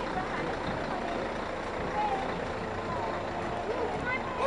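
A lorry passing slowly with its engine running, a steady rumble, with scattered voices of people around it.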